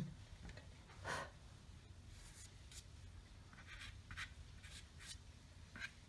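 Faint scratchy strokes of a drawing stick on paper, several short ones spaced out, as orange colour is added and dragged in along a lily pad's edge.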